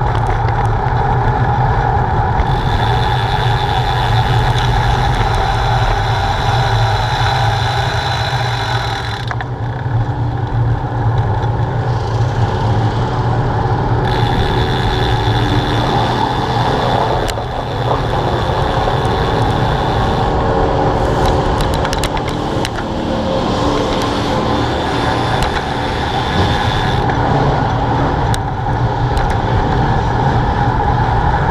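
Riding noise from a bicycle rolling along an asphalt street: a steady rush of wind on the handlebar-mounted camera's microphone with tyre hum underneath, continuous with only small shifts in level.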